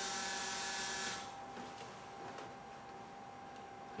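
Electric fuel pump running with the ignition switched on to activate its relay, then stopping about a second in. It is priming the new injection system to build base fuel pressure.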